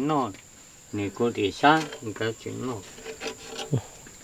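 Quiet talking in a low voice, in short broken phrases, over a faint steady high-pitched whine.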